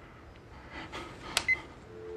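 A cordless phone handset being handled and switched on: a sharp click and a short high beep about one and a half seconds in, then the steady dial tone starts right at the end.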